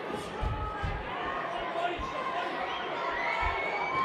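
Crowd in a large hall cheering and shouting at a boxing bout, with a few dull thuds. One voice holds a long shout near the end.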